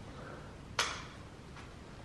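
A single sharp knock with a short echoing tail a little under a second in, then a much fainter knock about a second later, in a large, empty, hard-walled room.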